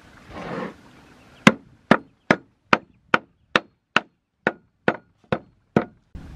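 A large kitchen knife chopping on a wooden chopping board: eleven sharp, even strokes, about two and a half a second, the first the loudest. A brief scraping noise comes just before them.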